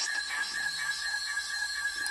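Radio static hiss with a steady high whistle running underneath, the demodulated audio of an SDR receiver tuned near 433 MHz playing through the laptop speaker.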